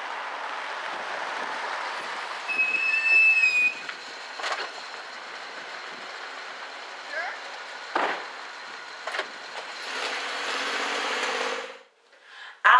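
A car on a street with its engine running steadily, a brief high-pitched brake squeal about three seconds in, then three sharp knocks spread over the following several seconds.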